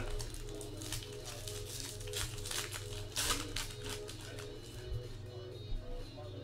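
A trading-card pack wrapper is slit open and crinkles, and cards are handled in short rustles, the loudest about two and a half and three and a quarter seconds in. Quiet background music and a low hum run underneath.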